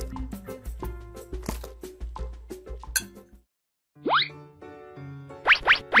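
Upbeat background music with short plopping clicks, then a brief silence about three and a half seconds in, followed by rising whistle-like cartoon glides near the end.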